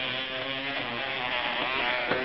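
Small battery-powered toothbrush buzzing steadily while a raccoon chews and handles it, the buzz wavering slightly in pitch.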